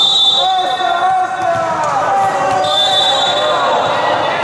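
Boys' voices calling out and a volleyball bouncing on the hardwood floor of a large, echoing gym, with a high steady tone sounding briefly near the start and again near the end.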